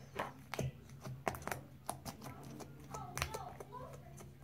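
Fingers poking and squishing a large mass of clear slime, giving quiet, irregular sticky clicks and pops.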